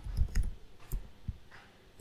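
Computer keyboard keystrokes as a password is typed: a few separate clicks at uneven intervals, the loudest in the first half-second.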